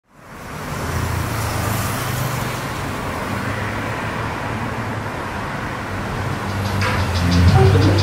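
City street traffic noise, a steady rumble and hiss that fades in at the start. Near the end a music track comes in with a beat.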